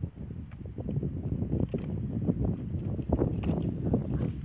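Wind buffeting the microphone in uneven gusts: a low, rumbling rush with irregular thumps.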